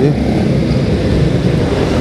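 Motorcycle engine running steadily while riding, under a dense low rush of road and wind noise.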